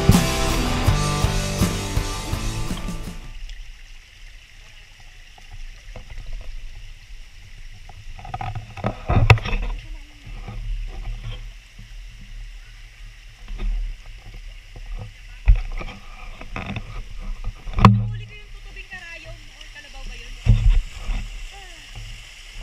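Music that cuts off about three seconds in, then a shallow mountain stream running over rocks, with several loud low thumps.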